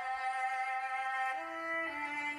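Background music: a violin holding long, sustained notes, stepping down to lower notes in the second half.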